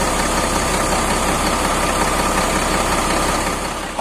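Hino RM 280 bus's rear-mounted six-cylinder turbodiesel idling steadily while it warms up. A new engine, sounding clear and smooth.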